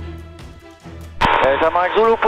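Background music fading out, then a little over a second in a voice cuts in over the aircraft radio, thin and clipped as air-band radio speech sounds.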